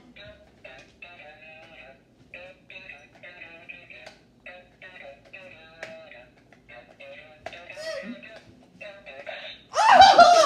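Tinny electronic music with a synthesized singing voice, in short choppy phrases, from a toy pig passed from hand to hand in a hot-potato game. The tune plays while the toy is passed, until it stops on a player.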